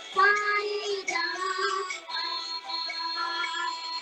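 A young girl singing solo, holding long notes.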